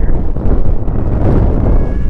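Wind buffeting the camera-mounted microphone, a loud, gusting rumble.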